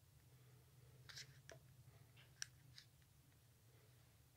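Near silence: room tone, with a few faint clicks and taps from handling about one to three seconds in.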